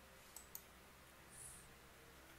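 Near silence: room tone, with two faint clicks about half a second in.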